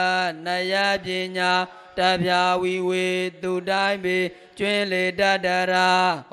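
A monk's single male voice chanting a Pali scripture passage on one nearly level pitch, in phrases separated by short breaks.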